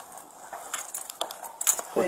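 Scattered light clicks and rattles of gear and handling close to a body-worn camera, with a few sharper clicks near the end.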